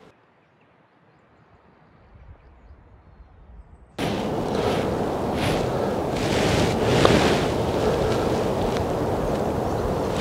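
Very quiet at first, then about four seconds in a sudden start of loud, steady wind buffeting the microphone, a rumbling hiss outdoors.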